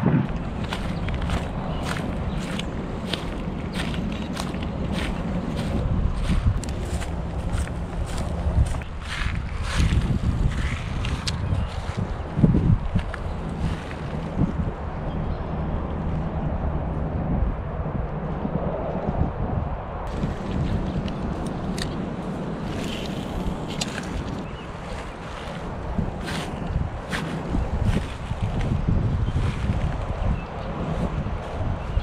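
Strong wind buffeting the camera microphone with a steady low rumble, over footsteps walking at about two steps a second; the steps thin out about halfway through and come only now and then after that.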